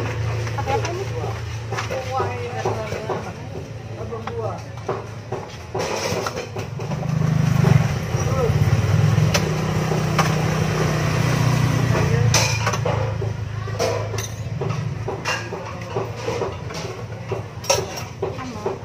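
Indistinct voices at a busy market stall, with a vehicle engine running low and steady for several seconds in the middle, and scattered light clicks and knocks.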